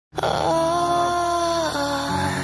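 Intro music: a long held, slightly wavering note over a low steady drone, starting abruptly and bending down near the end.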